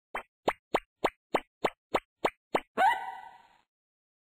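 Cartoon sound effects: about nine quick plops, roughly three a second, then a short tone that rises, holds and fades out.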